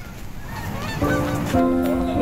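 A flock of geese honking overhead in short calls, followed about a second in by background music with steady held notes.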